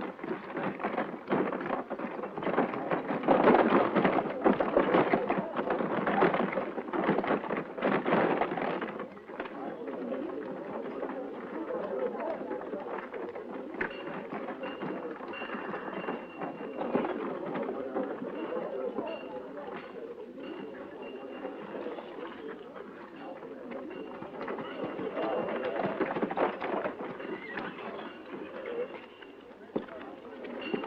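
Horse-drawn wagon passing: hooves clopping and wheels rolling, loudest for the first nine seconds, then quieter street sounds with indistinct voices.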